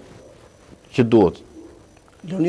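A man's voice: a single short syllable or filler sound, falling in pitch, about a second in, with low room tone around it.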